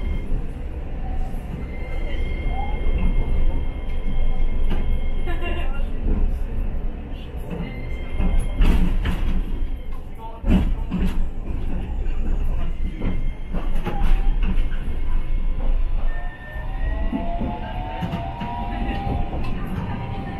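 Streetcar running along street track, heard from inside the driver's end: a steady low rumble of the running gear with scattered clacks and knocks from the wheels and track. In the last few seconds an electric motor whine rises in pitch.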